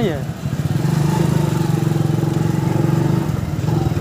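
Motorcycle engine running at a steady, even pitch while the bike is ridden along the road.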